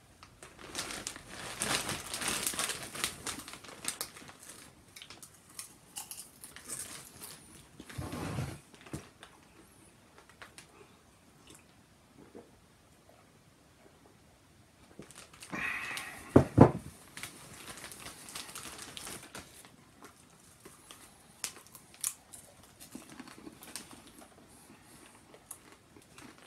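Plastic popcorn bag crinkling and rustling as it is handled, in irregular spells, busiest in the first few seconds. About sixteen seconds in comes a short, louder thump.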